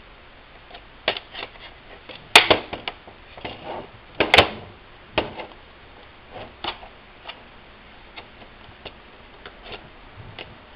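Plastic latches of an Asus X44H laptop's palmrest top case clicking and snapping loose as the case is pried and flexed off by hand: a string of sharp clicks, the two loudest snaps about two and four seconds in.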